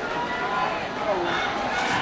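Spectators' voices: background chatter and calls from a crowd at the trackside, with one drawn-out shout near the start.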